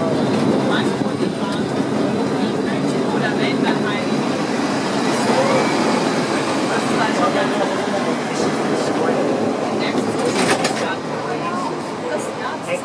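Old electric tram running along street rails, heard from inside the car: a steady rumble of wheels and running gear with scattered clicks and rattles, and a cluster of sharper clacks about ten seconds in.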